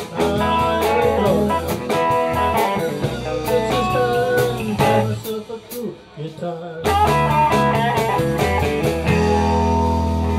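Live blues band: electric guitar playing lead lines with bent notes over bass and drums. About five seconds in the band drops back for a moment, then comes in again with a full chord and bass.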